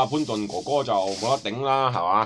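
A man speaking Cantonese in continuous narration, with a hiss behind his voice.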